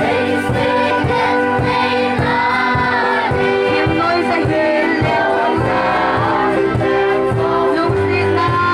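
A mixed group of men and women singing a song together in chorus over a steady beat of about two strokes a second.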